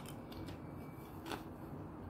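A person biting and chewing a thin, ridged potato crisp: a few faint short crunches, with a louder crack about a second and a half in.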